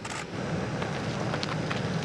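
A steady low rumble with a few faint clicks.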